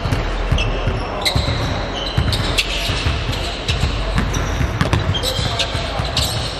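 Basketball dribbled repeatedly on a hardwood gym floor in a large hall, with short high squeaks of sneakers on the court scattered between the bounces.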